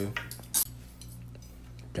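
Silverware and china plates clinking as they are laid on a dining table: one sharp clink about half a second in and a few lighter clicks.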